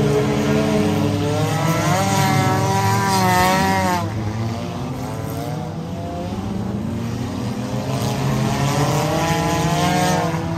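Figure-8 race car engines running hard, their pitch rising and falling as the cars accelerate and lift off. The sound drops suddenly about four seconds in, then builds again toward the end.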